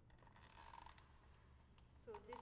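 Near silence: room tone, with one faint short scrape about half a second in.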